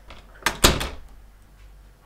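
A sharp double thump about half a second in, a quick lighter knock and then a heavier one, fading over about half a second, over a faint steady hum.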